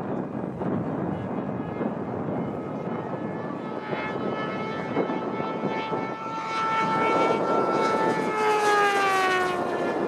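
Suzuki GSX-S1000 inline-four motorcycle engine held at high revs as the bike wheelies toward and past at high speed. The engine note grows louder through the second half, and its pitch drops as the bike goes by near the end.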